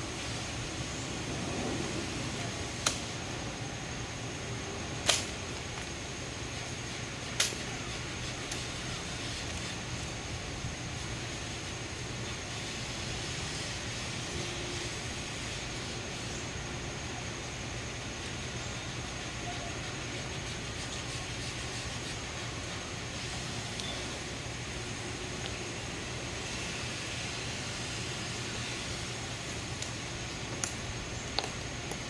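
Three sharp clicks about two seconds apart, from a ceremonial rifle being handled in drill as a Tomb guard takes it back after inspection. Then a quiet stretch of outdoor ambience with a steady high-pitched hum.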